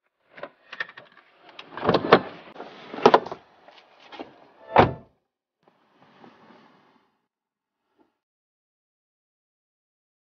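A car door being opened and shut from inside the cabin: a couple of clicks of the handle, knocks and rustling, and a deep slam about five seconds in, followed by faint scuffing, then silence.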